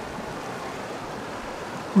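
Steady, even rush of flowing river water.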